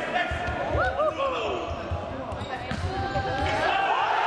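Futsal ball being kicked and bouncing on a sports-hall floor: a series of short thuds that echo in the large hall, with players' shouts over them.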